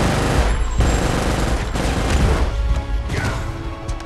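Action-film battle soundtrack: score music mixed with a dense, crackling and booming burst of effects that starts suddenly and stays loud for about three seconds.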